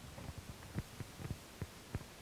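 Soft, irregular low thumps and knocks, several a second: handling noise from a handheld microphone being held and moved.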